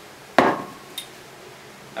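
A glass bottle set down on a desk: one sharp knock with a short glassy ring as it dies away, followed by a faint click about a second later.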